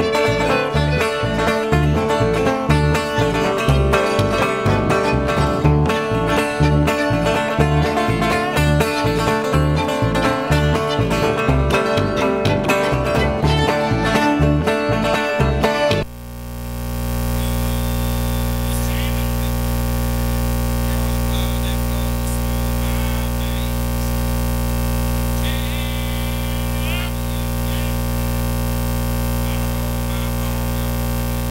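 Bluegrass band playing an instrumental passage on fiddle, acoustic guitar and upright bass, with a steady plucked bass beat. About sixteen seconds in, the music cuts off abruptly and is replaced by a loud, steady hum and hiss. The band is still playing on stage, so this is a recording dropout.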